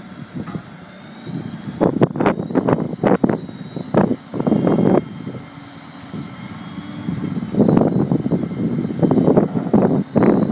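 Succi-Lift SR5 hooklift working off a pickup-based truck: the truck's engine runs with a steady high hydraulic whine as the hook arm draws a roll-off container up onto the frame. Irregular loud rumbling bursts come and go over it, strongest about two to five seconds in and again near the end.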